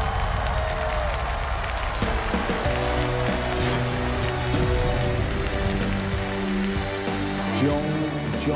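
Audience applause with background music. From about two seconds in, held chords over a low, steady bass come in under the clapping.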